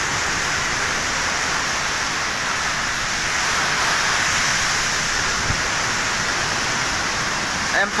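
Typhoon wind and heavy rain making a steady rushing noise, with a brief low thump about five and a half seconds in.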